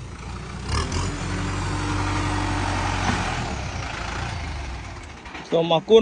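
Kubota L5018 tractor's diesel engine running steadily, swelling about a second in and fading away near the end.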